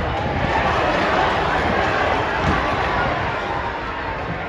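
Football stadium crowd: many spectators' voices at once in a steady murmur of chatter and shouting.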